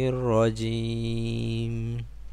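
A man's voice reciting Arabic in a chanted Quranic style. After a short pitch bend, the last syllable is held on one steady note for over a second, then stops.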